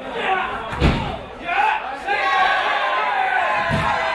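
A wrestler slammed down onto the wrestling ring mat about a second in: one heavy thud that booms through the ring. A second, lighter thud comes near the end, under the shouting voices of a close-packed crowd.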